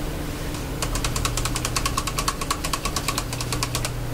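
Someone chewing a crisp bite of apple: a fast run of small crunching cracks, about ten a second, lasting about three seconds over a steady low hum.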